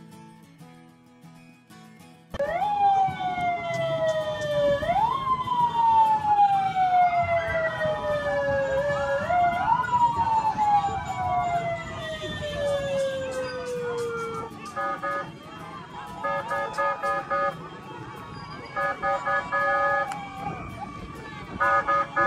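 A vehicle siren starts about two seconds in and wails, jumping up in pitch and gliding slowly down several times. From about two-thirds of the way through it gives way to groups of short, rapid honking beeps.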